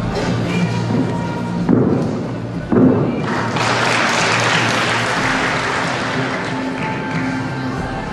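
Arena music playing while a gymnast's tumbling pass lands on the sprung floor with two heavy thumps about a second apart, followed by a swell of crowd cheering and applause that slowly dies down.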